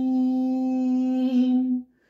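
A man's voice singing unaccompanied, holding one steady note for almost two seconds before breaking off; this is the drawn-out end of a sung line.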